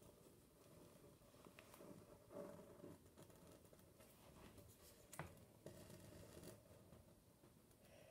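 Faint scratching of a pen tracing around a paper cut-out on a sheet of computer paper, with light paper rustles and a single sharp tick about five seconds in.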